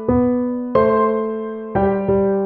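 Piano playing slow chords: three are struck, each left to ring and fade before the next, with the bass note stepping lower each time.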